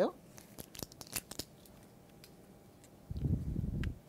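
A few light clicks and taps as a plastic craft-paint bottle is handled, then a short muffled low rumble near the end.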